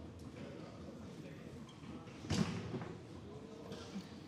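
Foosball play on a Garlando table: one sharp knock of the ball against a player figure about two seconds in, a shot struck and blocked, over low hall background.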